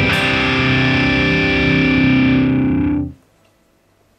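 Distorted seven-string electric guitar holding a final ringing chord, which cuts off suddenly about three seconds in, leaving near silence.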